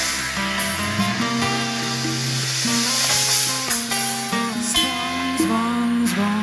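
Live band music, with guitar to the fore.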